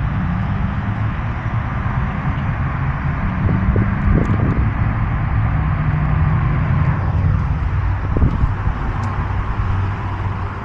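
Steady road traffic: a low engine drone under a constant hiss of passing vehicles.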